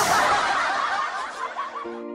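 High-pitched laughter with quick up-and-down pitch, fading over the two seconds; music with steady held notes starts just before the end.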